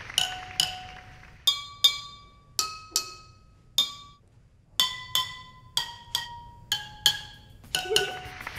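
A water xylophone: drinking glasses filled with different amounts of water, struck one at a time with a metal spoon. About fifteen ringing glass notes of differing pitch are played as a simple tune, the fuller glasses giving the lower notes.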